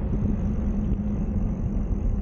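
Folding e-bike riding on an asphalt path: a steady low rumble of the tyres rolling on the road, with a steady hum through it.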